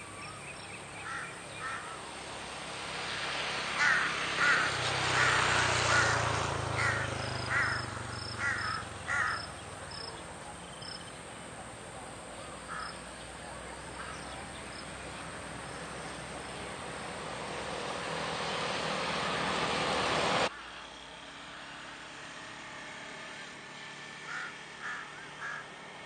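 Crows cawing from the treetops: a couple of caws near the start, a run of about nine caws from about four to nine seconds in, a single caw a few seconds later, and three quick caws near the end. Behind them a rushing background noise swells twice, and the second swell cuts off suddenly about twenty seconds in.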